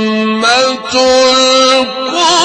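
A male Quran reciter chanting in melodic tajweed style. A long held note gives way about half a second in to a short rising phrase; after a brief break he holds another steady note.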